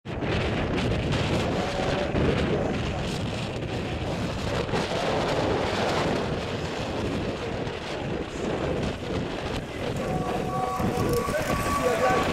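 Wind buffeting the microphone, a steady rough rumble, with faint voices coming in near the end.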